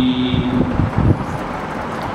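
A man's chanted scripture recitation ends on a held note about half a second in. A steady rumbling noise with a few low knocks follows.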